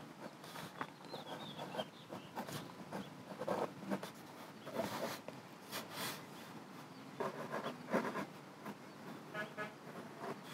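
Faint, irregular scratching of a fine-liner ink pen drawing short strokes on cold-press watercolour paper.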